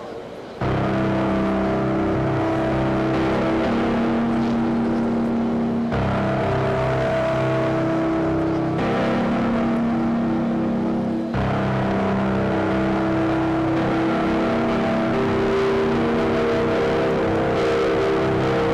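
Electronic keyboard playing slow, held chords that start about half a second in and change every few seconds.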